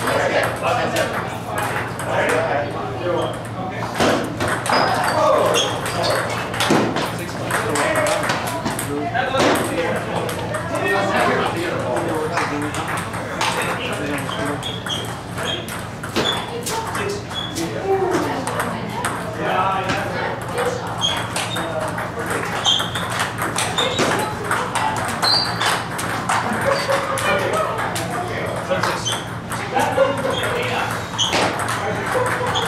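Table tennis balls clicking off paddles and bouncing on tables in rapid, irregular strokes from several tables at once, under indistinct chatter and a steady low hum.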